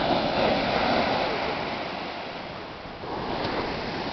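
Ocean surf breaking on a sandy beach: a steady rush of water, loudest in the first second or so, easing off toward three seconds in, then swelling again as the next wave comes in.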